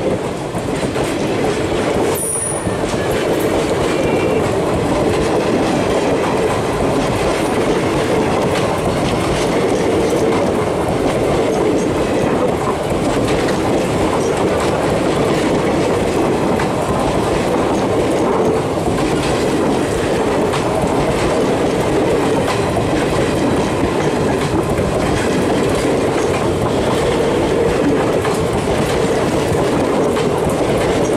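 Indian Railways express passenger coaches passing close by at speed: a steady, loud rolling noise of steel wheels on the rails, with a brief sharp click about two seconds in.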